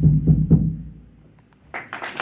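A few last percussive knocks on a jumbo acoustic guitar's body, each with a low ringing note, dying away within about a second as the song ends. Near the end an audience starts cheering and applauding.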